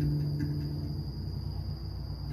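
A Rav Vast steel tongue drum note rings out and dies away by about a second in, over a steady high trill of crickets.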